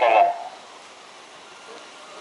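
A man's voice finishing a phrase in the first moment, then a faint, steady background of outdoor road traffic.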